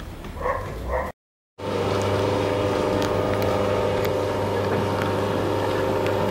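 A few short high-pitched sounds, then a sudden break, after which a small passenger motorboat's engine runs steadily with a deep hum and an even higher drone.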